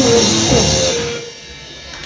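Live hardcore punk band, with electric guitar and drums, finishing a song: the full band sound stops about a second in, a last held note dies away, and a short lull follows.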